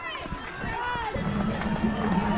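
People's voices along a marathon course, with one voice held and calling out from just over a second in.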